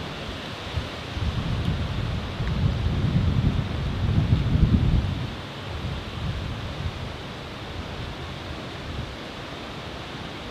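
Wind buffeting the microphone in gusts, strongest from about one to five seconds in, over a steady outdoor hiss.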